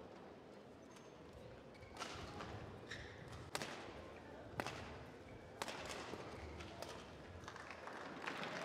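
Badminton rally: a series of sharp racket strikes on the shuttlecock, about one a second, starting about two seconds in.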